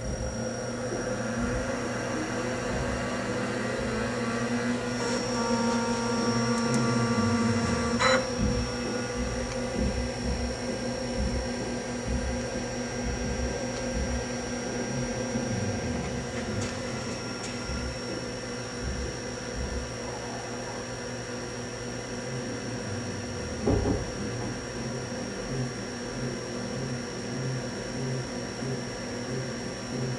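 Compaq Portable computer starting up: its fan and 10 MB hard drive spin up with a whine that builds over the first several seconds. A sharp click comes about eight seconds in, then the machine runs steadily with a hum and high whine, and a single knock comes about 24 seconds in.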